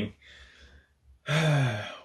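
A man's soft breathy exhale, then a little past the middle a drawn-out voiced sigh with a slowly falling pitch.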